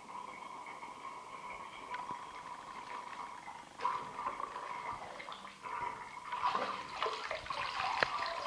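Running water from a shower hose splashing onto sneakers in a bathtub, getting louder and more splashy from about six seconds in. A steady high tone sounds beneath it.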